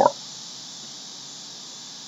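Faint steady hiss of the narration recording's noise floor, with the tail of a spoken word at the very start.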